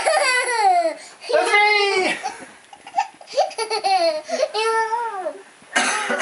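A toddler laughing and squealing with delight in several bouts of high-pitched laughter that rises and falls in pitch.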